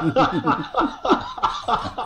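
Several men laughing together in quick repeated bursts, thinning out near the end.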